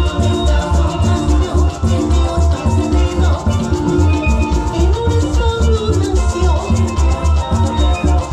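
A live parang band playing through a PA, with steelpan, drums and a strummed string instrument over a steady bass beat.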